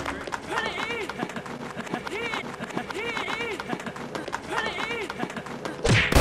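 Crowd clapping rapidly, overlaid with an edited, warped voice-like sound whose pitch swoops up and down in a repeating pattern.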